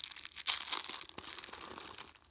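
Thin clear plastic bag crinkling as hands work it open, a dense, irregular crackle that is loudest about half a second in and thins out near the end.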